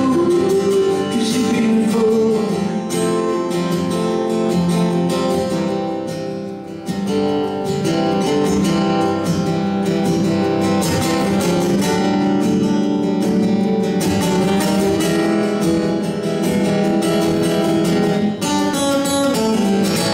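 Solo acoustic guitar strummed steadily in a live set, with a brief dip in loudness about a third of the way through.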